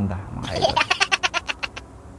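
A high-pitched voice breaking into a rapid run of squealing pulses, about eight a second, starting about half a second in and stopping near the end.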